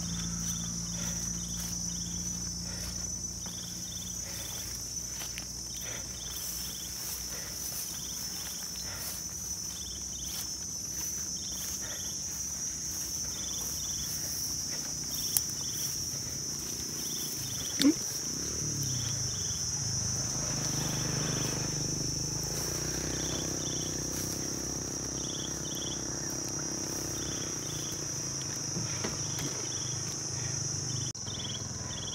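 Steady high-pitched insect chorus from the grass field, with a second insect's double chirp repeating every second or two. Two sharp clicks come near the middle, the second being the loudest sound.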